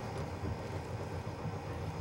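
Large cauldron of water at a rolling boil while anchovies are cooked in it, giving a steady bubbling with a low rumble underneath.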